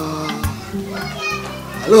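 A man singing in long, wavering notes over background music with a low bass beat.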